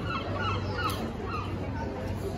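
A few short bird-like calls, one sliding upward near the middle, over steady street background noise.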